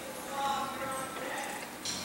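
Faint, indistinct voices in a large hall, with no words made out.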